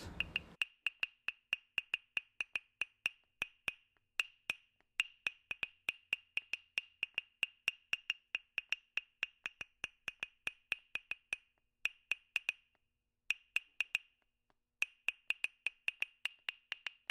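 Rapid dry wood-block-like clicks, about four a second, each with a short high ringing pitch, with a few brief pauses near the end.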